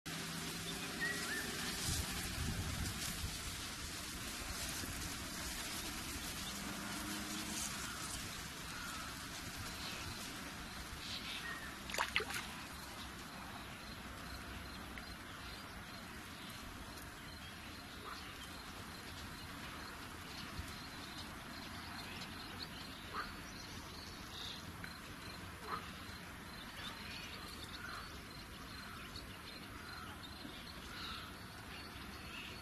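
Outdoor ambience at the water's edge: a steady low hiss with faint, scattered animal calls, and one sharp click about twelve seconds in.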